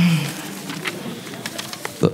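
A man's drawn-out last syllable falling in pitch and trailing off, then the low hiss of a quiet meeting room with a few faint clicks.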